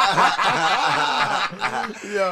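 Several men laughing together, their chuckles overlapping.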